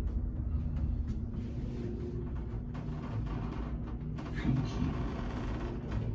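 Old Richmond hydraulic elevator car travelling down: a steady low rumble with a faint steady hum under it.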